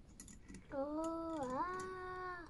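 A few light clicks of small metal parts being handled, then a long, steady vocal hum with a dip in pitch about midway.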